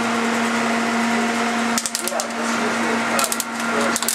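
Steady hum and hiss from a commercial kitchen's gas range, broken by two short clusters of sharp plastic clicks, one about halfway through and one near the end, as a plastic deli container's lid is pried off.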